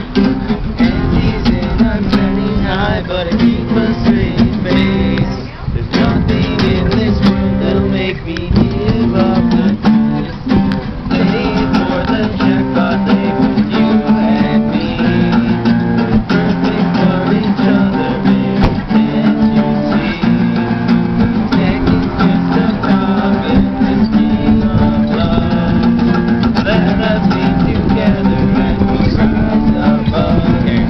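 Several acoustic guitars strumming chords together in an instrumental stretch of a song, with brief lulls about five and nine seconds in.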